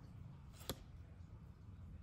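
Oracle cards being handled: one short click about two-thirds of a second in as a card is slid off the fanned deck, over a low steady room hum.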